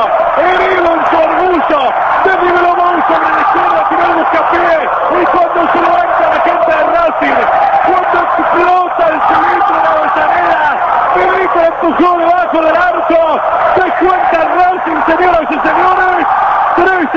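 A male radio football commentator talking fast and without pause in Spanish, in a high, raised voice, just after a goal.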